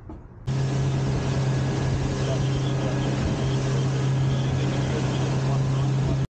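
Boat's Suzuki outboard engine running at speed, a steady drone with rushing wind and water over it. It starts abruptly about half a second in.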